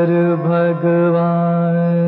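Slow, chant-like vocal line of a classical Hindi film song, a voice holding long notes with brief syllable changes about half a second in and just before one second.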